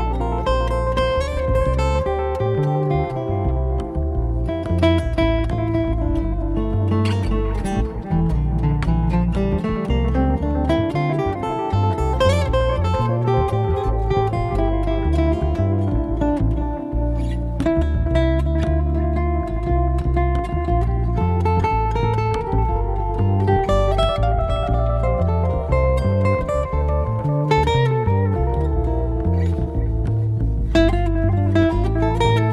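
Instrumental passage on a picked steel-string acoustic guitar over a fretless acoustic bass, without vocals. One note slides steadily upward about eight seconds in.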